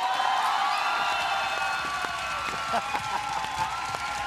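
Audience applauding and cheering, with voices shouting over dense clapping. It eases a little near the end.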